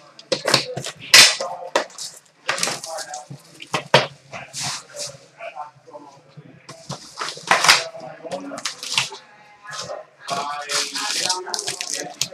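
Trading-card box and card stacks being handled on a glass counter: irregular sharp taps and knocks of cardboard and cards set down on the glass, with rustling and sliding of packs in between.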